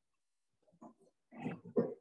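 A person's brief, faint vocal sounds over a video call, such as a murmur or short throat noise, coming after about a second of near silence and leading into speech.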